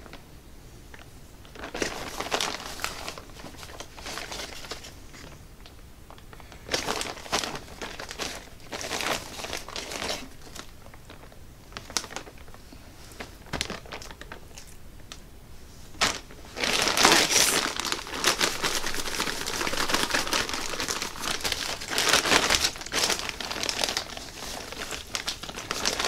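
Plastic Ziploc bag crinkling in irregular spells as raw chicken strips are tossed in breading inside it; the longest, loudest spell comes about two-thirds of the way through.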